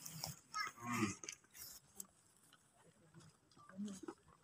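Mostly quiet, with two short, faint, low muffled voice sounds like a hum or murmur, one about a second in and one near the end, and a few soft clicks.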